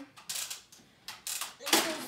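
Plastic toy foam-dart blasters being handled and set down on a table: a few short clattering knocks and rustles, the loudest one near the end.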